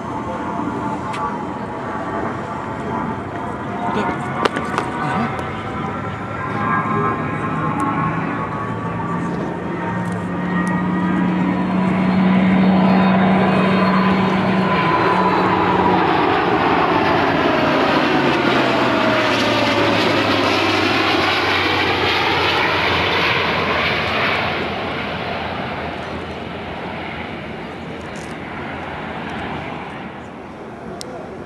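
A Beriev Be-200 amphibian's twin turbofan engines in a low flypast. The jet noise builds to its loudest about halfway through, and a whine drops in pitch as the aircraft passes overhead. The sound then fades as it moves away.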